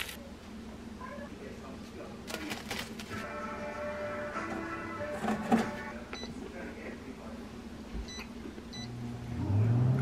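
Handling clicks and knocks, then a few short electronic beeps from a PowerAir Pro Elite air fryer oven's touch panel as its buttons are pressed to start it.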